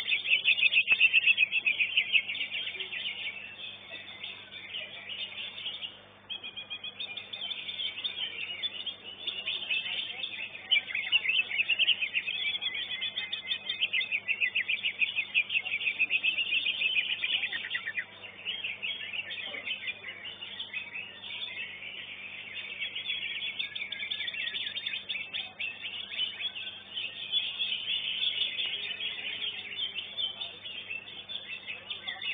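Cucak ijo (green leafbird) singing a long run of rapid, high, chattering song, with short breaks about six seconds in and again near eighteen seconds.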